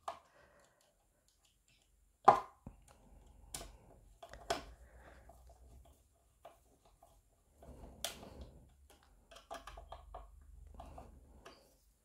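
Small hand screwdriver driving small screws into a toy playset panel: faint scraping and turning with a few sharp clicks, the loudest about two seconds in. The screws go in stiffly.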